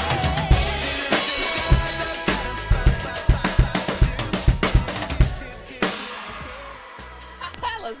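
Acoustic drum kit played along with a pop backing track: steady kick, snare and cymbal hits. About three-quarters of the way through, the song ends on one last big hit that rings out and fades.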